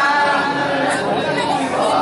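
Several men's voices chanting a devotional refrain together in Arabic, with no instruments.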